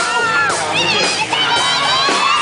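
Concert crowd screaming and cheering, many high-pitched voices gliding up and down at once, over the band's music.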